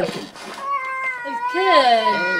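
A long, high-pitched wailing cry, held and then swooping up and down near the end.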